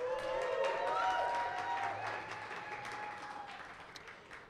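Audience applauding, with a few voices cheering over the clapping, fading out over a few seconds.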